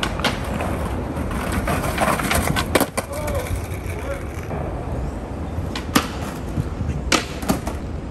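Skateboard trucks grinding down a concrete stair ledge with a continuous rough scraping rumble, broken by sharp board clacks: one just after the start, a loud one about three seconds in, and two more near six and seven seconds.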